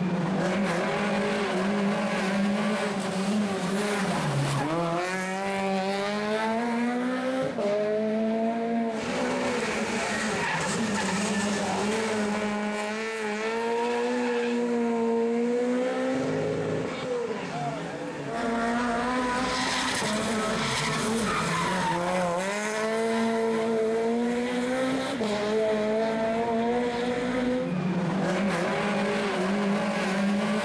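Peugeot 208 rally car engine revving hard through a series of passes, its pitch repeatedly climbing under acceleration and dropping at each lift and gear change.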